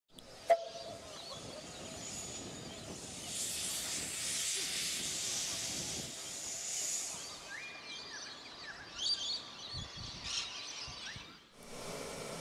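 Steam hissing, swelling from a few seconds in and fading away, after a single sharp click about half a second in. A few short high chirps come near the end.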